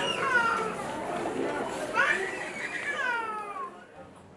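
Children's high-pitched voices calling out, several rising and falling calls in a row.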